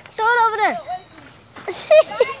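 A person's loud, high-pitched yell, held about half a second and then dropping in pitch, followed near the end by a second, shorter shout.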